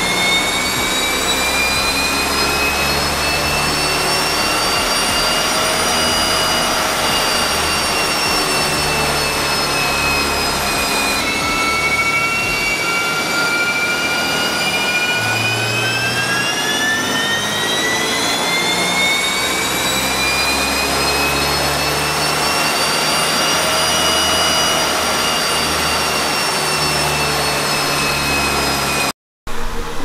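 2009 Subaru WRX's turbocharged flat-four making full-throttle pulls on a chassis dyno in fourth gear: a rising whine that climbs for several seconds and then falls away as the car coasts down, twice, with a sudden break about eleven seconds in. The sound cuts off suddenly near the end.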